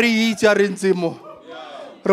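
A man's voice raised and shouted in preaching over a microphone, dropping quieter about a second in.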